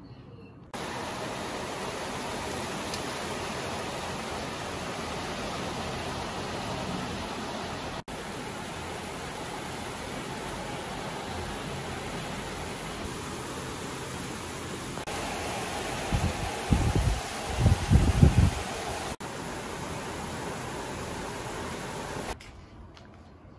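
Heavy rain falling, a steady hiss that starts just under a second in and briefly drops out twice. A few loud low rumbles come about three-quarters of the way through.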